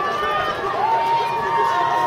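Distant spectators yelling encouragement to runners, with one high voice holding a long call through the second half.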